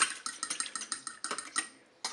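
A spoon stirring a liquid marinade in a small glass bowl, clinking rapidly against the glass. The clinking stops near the end.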